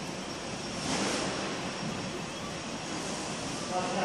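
Steady whirring hiss of a fiber laser marking machine's cooling fans running, with a brief swell about a second in. The laser is not yet marking: only its red aiming light is on.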